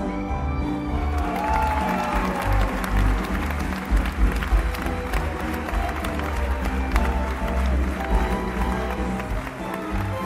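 Live musical-theatre orchestra playing with a steady bass line, while the audience applauds. A single voice glides down in pitch about a second in.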